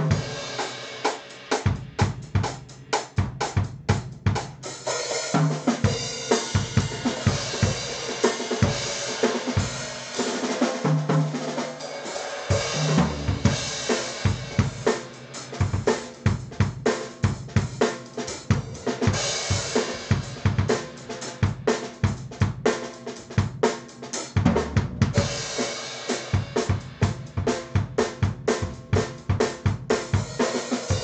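Acoustic drum kit played fast in a metal practice pattern: rapid double-kick bass drum strokes under snare hits, hi-hat and crash cymbals. It runs in spells of very fast even strokes broken by cymbal crashes.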